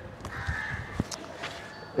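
A crow caws once, a call of under a second, over faint footsteps.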